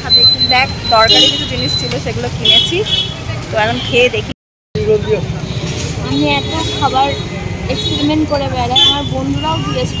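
Talking over steady street and traffic noise, with short high-pitched tones sounding now and then. The sound drops out briefly about four and a half seconds in.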